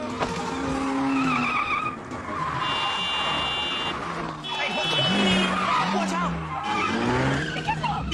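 A car engine revving up and down while its tyres squeal in two long skids a few seconds in, with frantic shouting over it.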